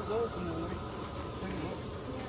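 Faint voices talking in the background over a steady high hiss.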